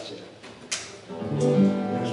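Guitar being strummed, a chord ringing out from about halfway through.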